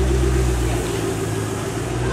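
Shelby GT500 Mustang's V8 idling with a low, even rumble as the car creeps forward at walking pace; the rumble wavers and thins briefly midway, then steadies again.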